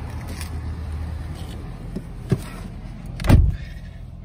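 2019 Subaru Crosstrek's flat-four engine idling steadily, then a short knock and, about three seconds in, the heavy thud of a car door shutting. The sound is muffled afterwards.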